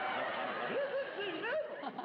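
Studio audience and panel laughing together.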